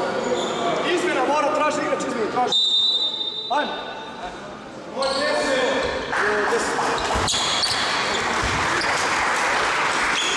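Basketball bouncing on a hardwood court among players' and spectators' calling voices, with a short high steady tone about three seconds in and a single sharp knock a little after seven seconds.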